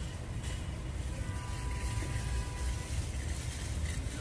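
Outdoor street ambience: a steady low rumble, with a faint steady tone that comes in about a second in and fades out about two seconds later.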